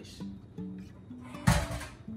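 Background music of plucked guitar, with one loud metallic clatter about one and a half seconds in as a stainless steel mixing bowl is set down.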